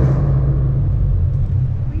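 Tuned 2013 Scion FR-S's flat-four engine running steadily at low revs, heard from inside the cabin as a low, even hum.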